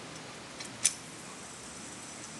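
A sharp click a little under a second in, with a fainter click just before it, as fingers flick a metal fidget spinner into a spin; otherwise only a faint steady hiss.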